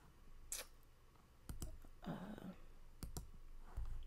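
A few quiet computer mouse clicks, some in quick pairs, with a brief voiced hum about two seconds in.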